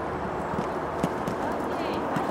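Grey pony's hoofbeats on a sand arena as it canters over a show jump, a few separate thuds with the loudest about a second in, where the pony lands.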